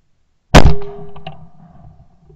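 A single 12-bore shotgun shot from a side-by-side, fired about half a second in, which breaks the clay target. The report rings and dies away over about a second, with a few smaller knocks after it.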